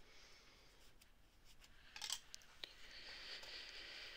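Faint rubbing of a tissue over plastic clay cutters as they are wiped clean, with a few light clicks and a soft steady rubbing hiss in the second half.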